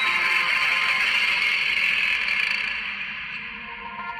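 Film background score: a sustained, echoing swell of music that fades toward the end.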